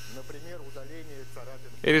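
Mini drill running at reduced speed through its flexible shaft, a steady low hum with a thin high whine, while its felt polishing bit works a scratch out of a glass spectacle lens.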